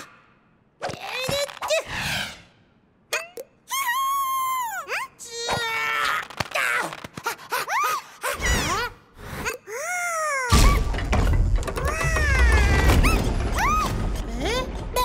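Animated cartoon chick characters giving wordless, high-pitched cries and exclamations that swoop up and down in pitch, with short knocks and thuds between them. A loud low rumble comes in about ten seconds in and runs under the cries.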